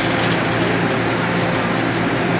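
Nippon Sharyo light rail car standing at an underground station platform, its onboard equipment running with a steady hum over a broad, even noise.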